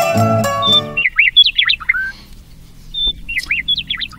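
Plucked-string music stops about a second in. A bird then chirps in quick rising and falling notes, pauses for about a second, and chirps again near the end.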